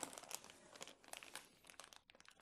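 Clear plastic accessory bags crinkling quietly as hands rummage through them and pick one up: a quick irregular run of small crackles.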